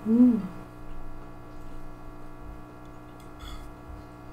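A short closed-mouth "mmm" of enjoyment from a woman chewing food, rising then falling in pitch, just at the start. After it, faint eating and utensil sounds over a steady electrical hum.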